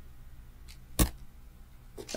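A single sharp click about a second in, a computer mouse click advancing the presentation slide, over faint room tone.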